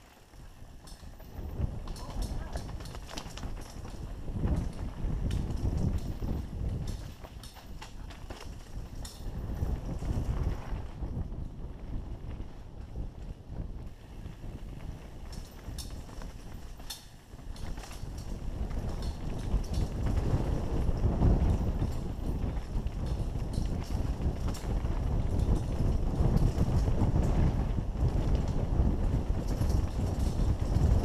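A mountain bike ridden fast down a dirt trail, heard from the rider's own camera: a steady rumble of wind and tyres on dirt with the bike clattering and rattling over bumps. It gets louder over the second half.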